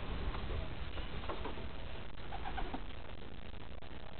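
Racing pigeons cooing: a few short, soft coo notes over a steady low rumble.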